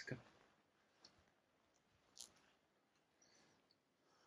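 Near silence, broken by a few faint, brief clicks and rustles: one right at the start, a sharper one about two seconds in, and weaker ones in between.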